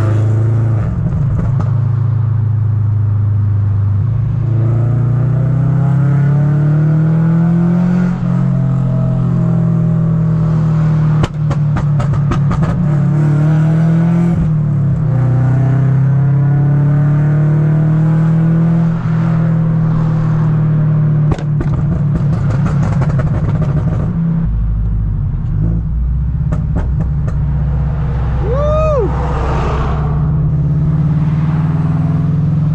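A 2013 Scion FR-S's flat-four engine and single-exit exhaust, heard from inside the cabin, droning as the revs rise and fall. Short runs of crackling pops come through a few times around the middle and later. A brief whistle-like tone rises and falls near the end.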